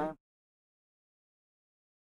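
Silence: the sound track drops out completely after the last syllable of a spoken word at the very start.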